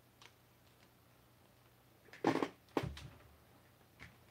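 Objects handled on a workbench: a short clatter about two seconds in, then a knock with a low thud half a second later, over a faint steady hum.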